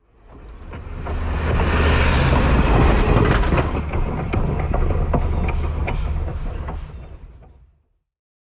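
A full-size railway train passing close by: a loud, low rumble with scattered sharp clicks of wheels over the rail joints. It fades in over the first two seconds and fades out near the end.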